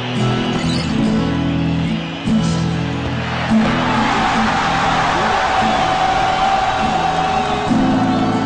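Background music with guitar. About three and a half seconds in, a swelling roar of a stadium crowd cheering joins it as a goal goes in.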